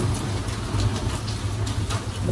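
Heavy rain falling steadily, an even hiss, over a continuous low rumble.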